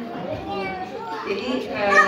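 Speech: a woman speaking Indonesian into a microphone over a PA.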